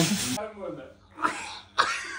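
A man's harsh, cough-like grunt with a forceful exhale as he does a push-up, then softer strained voice sounds and a second breathy burst near the end.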